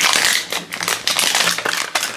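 Crinkly plastic wrapping being peeled and torn off a plastic toy container by hand, a dense run of crackles and rustles.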